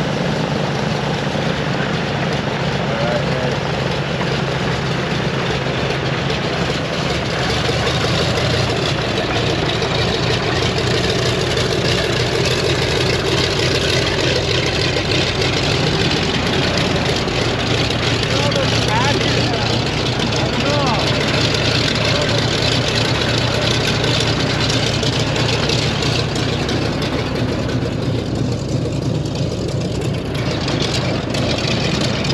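Twin radial piston engines of a Douglas C-47 transport idling close by, a steady low drone whose pitch shifts slightly a few times.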